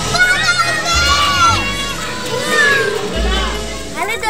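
Several children shouting and squealing together over steady background music.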